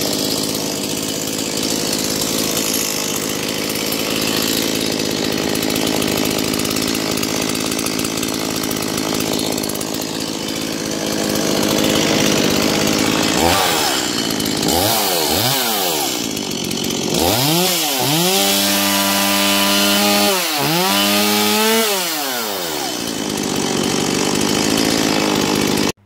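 Stihl MS180 two-stroke chainsaw running just after starting: it idles steadily, then from about halfway it is revved several times. There are two quick throttle blips, then two longer revs held high, before it drops back to idle.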